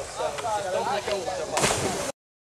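Someone dropping from a rope swing into a river: a short, loud splash about a second and a half in, over people's yelling voices.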